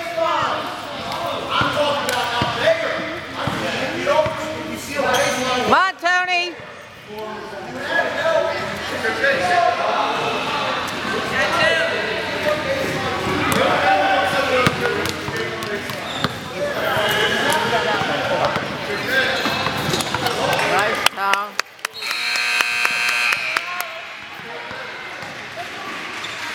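Basketball gym during a game: a ball bouncing on the hardwood among overlapping voices of players and spectators echoing in the hall. A short squeal about six seconds in. A steady electric buzzer, such as a scoreboard horn, sounds for about a second and a half near the end.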